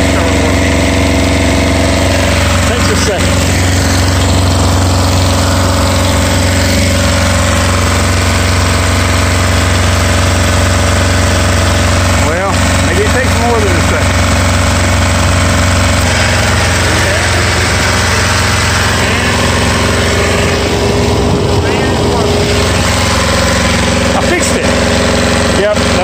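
Rigmaster APU's small diesel engine running steadily at close range, after a burned-out fuse in its fan circuit was replaced. About sixteen seconds in, its low hum shifts slightly.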